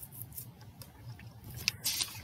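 Quiet room tone with a few faint clicks, the sharpest about one and three-quarter seconds in.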